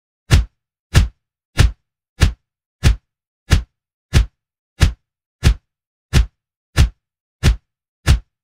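A run of punch whacks, one about every two-thirds of a second, twelve in a row, evenly paced with dead silence between them: birthday punches landing on the arm, one for each year of an 18th birthday.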